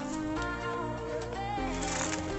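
Background music with held, sustained notes.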